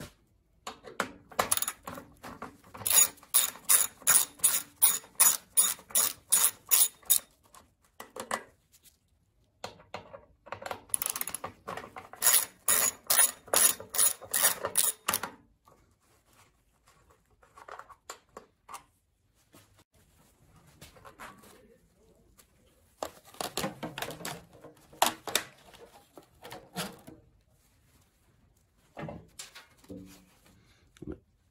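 Socket ratchet clicking in two runs of fast, even clicks, about three or four a second, as two small nuts are undone, followed by scattered lighter clicks and knocks of small metal parts being handled.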